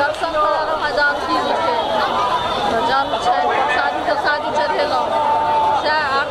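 Speech over the chatter of a crowd: a voice talking amid many overlapping voices, with no break.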